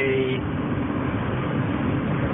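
Steady road and wind noise inside a car's cabin cruising at highway speed, with a faint low engine hum underneath.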